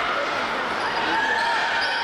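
Many children's voices shouting and calling over one another in a gymnasium, a steady din with high calls rising above it.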